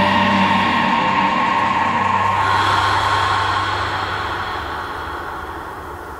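Closing of a rock recording: a sustained wash of noisy, droning sound over a steady low hum. The lower notes drop out a little over two seconds in, and the whole sound fades out steadily.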